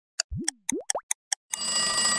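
Edited sound effects: clock-like ticking at about four ticks a second, with three quick rising cartoon 'boing' glides in the first second. About a second and a half in, a bell starts ringing steadily, like an alarm-clock or school bell.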